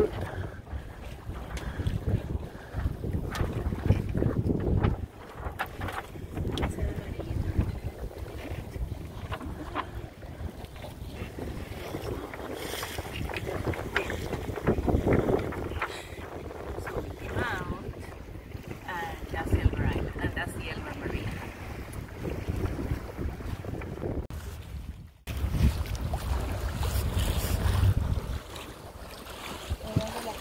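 Wind rumbling on the microphone over the wash of choppy water along the hull of a sailboat under way. The sound drops out briefly near the end, then resumes.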